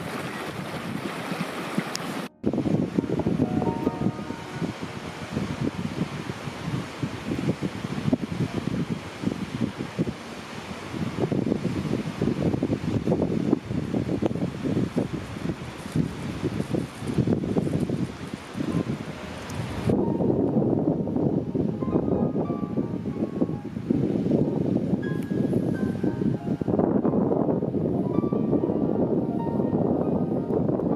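Wind rushing and buffeting the microphone in irregular gusts, broken by a sudden cut about two seconds in. From about twenty seconds the hiss thins and soft piano notes come through.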